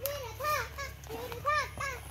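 A child's voice calling out in short sing-song syllables that rise and fall, in two quick groups of about three.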